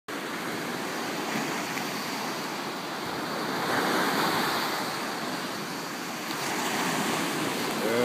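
Ocean surf breaking and washing up a sandy beach. It is a steady rushing wash that swells louder about four seconds in as a wave breaks, and again near the end.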